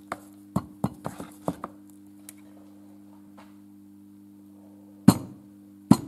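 Metal fuel injector parts clicking and clinking in the hands as an injector is taken apart, a quick run of small clicks over the first couple of seconds. Near the end come two sharp knocks about a second apart, over a steady low hum.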